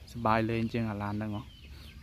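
A person's voice speaking one short phrase, about a second long, then a pause.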